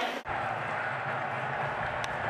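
Steady, even ambient noise of a baseball game broadcast between pitches, with no commentary. The sound changes abruptly at an edit cut a fraction of a second in.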